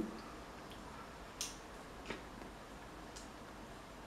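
A few faint clicks and taps from a mascara tube being opened and handled, the clearest about a second and a half in, over quiet room tone.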